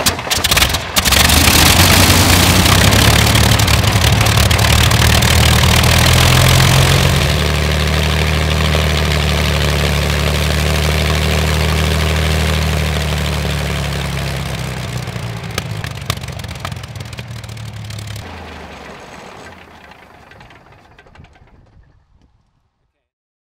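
Rolls-Royce Merlin 22 V12 aero engine firing and catching with a few ragged bangs after cranking, then running loud with its propeller turning. It runs at higher revs for several seconds, drops to a lower steady run about seven seconds in, and the sound dies away over the last few seconds.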